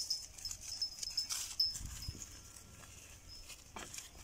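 Goats grazing close by: soft scattered clicks and rustles in the grass, with no bleating. A high, repeating chirp runs in the background, and there is a brief low rumble about halfway through.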